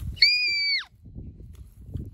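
A child's shrill, high-pitched squeal voicing a dinosaur's call, held level for under a second and dropping in pitch as it ends.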